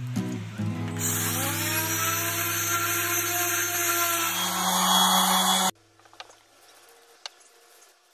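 Electric orbital sander starting up about a second in, its motor whine rising as it spins up, then running against a wooden stool top with music underneath. The sound cuts off abruptly past the middle and gives way to low quiet with a few faint clicks.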